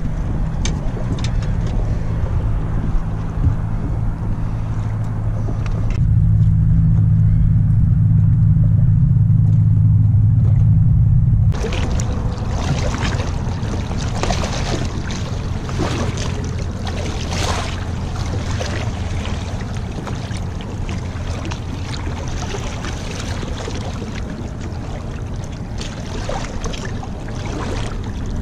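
A boat motor running with a steady low hum, louder for several seconds in the first half. From about halfway in, water splashes and sloshes around a redfish held alongside the hull by a fish grip, over the continuing hum.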